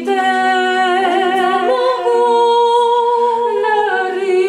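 Three women's voices singing a cappella in harmony, holding long notes with vibrato; the parts move to new notes about halfway through.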